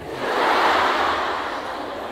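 A large hall audience of female students laughing together in response to a joke, swelling in the first half second and slowly dying away.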